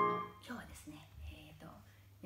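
A chord on a digital piano rings out and fades away within the first half second, followed by faint, quiet speech.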